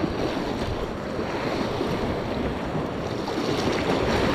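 Sea surf washing over shoreline rocks, a steady rushing noise, with wind buffeting the microphone.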